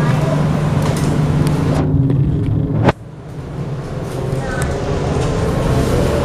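Steady running noise inside a moving MRT train, with a low hum. Just before three seconds in, the sound cuts off abruptly at a splice in the recording, then the train noise builds back up.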